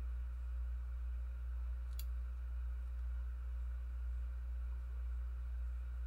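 Steady low hum, with one small sharp click about two seconds in as the figure's plastic arm piece is handled.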